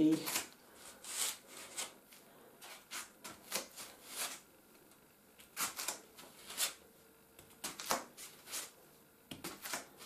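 Soft, irregular rustles and light brushes of a bare foot moving over a rubber exercise mat as the toes pick up and drop small bundles of yarn, some strokes louder than others.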